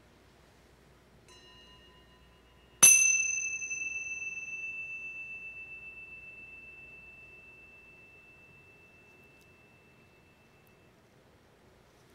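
A small bell or chime struck once about three seconds in, giving one high clear tone that rings on and slowly fades over some eight seconds. It follows a faint, lighter touch of the same kind about a second earlier.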